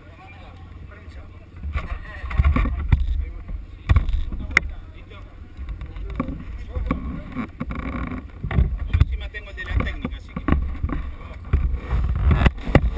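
Indistinct voices with low wind rumble and knocks on the microphone of a camera mounted on a parked motorcycle; about seven seconds in, clothing brushes against the camera.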